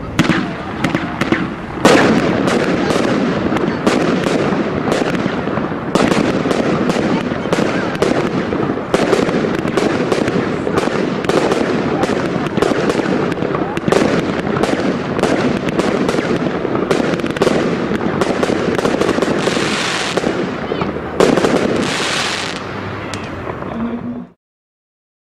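EVUCO 'Winner Serie Aas 5' 23 mm consumer fireworks cake firing a rapid, dense barrage of shots and bursts. Near the end come two stretches of louder hissing crackle.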